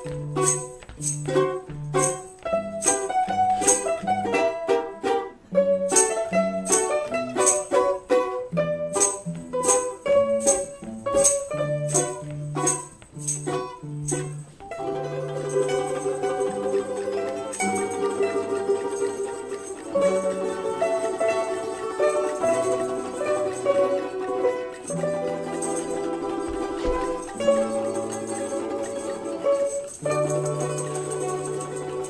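A Russian folk string ensemble of balalaikas, domras and guitar playing an instrumental piece. The first half is crisp, detached plucked notes and strummed chords over a bass line. About halfway through, the playing turns to smoother held notes.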